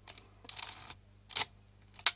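Olympus 35 RD rangefinder camera worked by hand: a soft mechanical rasp in the first second, then a single sharp click from its leaf-shutter mechanism about one and a half seconds in.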